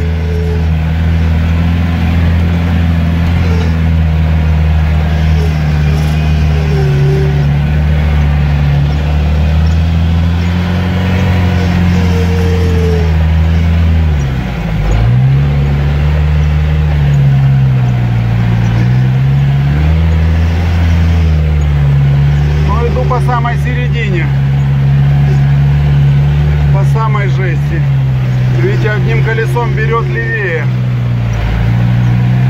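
UAZ 4x4's engine running steadily in low-range gearing through deep mud and water. Its pitch dips briefly about halfway through and swings down and back up a few seconds later.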